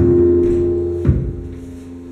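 Zouk dance music: held keyboard chords over a deep bass note, with a second bass hit about halfway through, fading toward the end.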